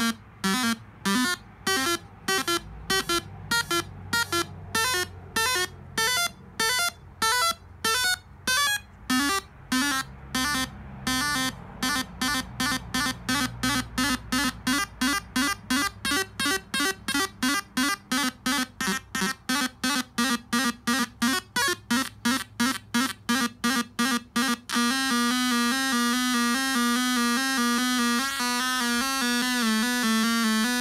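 Homemade cigar box synth built on 555 and 556 timer chips with a 4017-driven four-step sequencer, three steps on, playing a repeating pattern of short electronic notes through its small built-in speaker. The sequence speeds up steadily from about two notes a second to several, and about 25 s in the notes run together into one continuous warbling tone.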